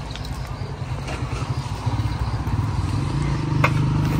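An engine running with a steady low throb, growing louder over the last two seconds, with a single sharp click shortly before the end.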